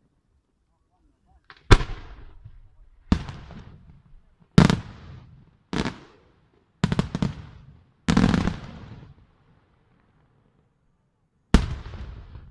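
Senatore Fireworks aerial shells bursting: about seven sharp bangs, roughly one to one and a half seconds apart, each trailing off in a rolling echo. Around the middle, several reports come close together, then there is a pause before a last bang near the end.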